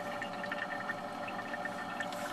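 A steady background hum made of several held tones, with no sudden sounds.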